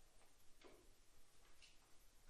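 Near silence: faint room tone, with two faint soft knocks about a second apart.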